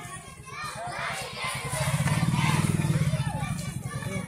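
Many children's voices chattering and calling at once as a group of schoolchildren walks in procession. A low rumble swells under the voices in the middle and fades again.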